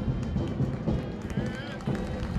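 Military band music with drums, over the tramp of a marching contingent's feet.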